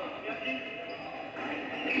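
Voices in a gym during a basketball game, with a basketball bouncing on the court and a shout of "Oh!" at the end, played back from old videotape through a TV speaker.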